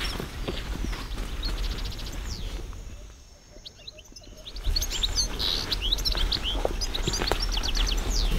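Forest birds chirping in many quick, short, high calls, dropping to a brief lull about three seconds in and returning more densely in the second half.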